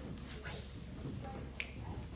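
A single sharp click about one and a half seconds in, over a steady low hum of room noise.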